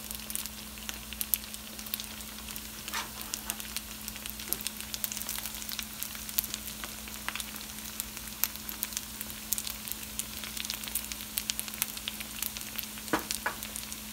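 Rice kubba frying in hot oil in a pan: a steady sizzle full of irregular crackles and pops, over a faint steady hum.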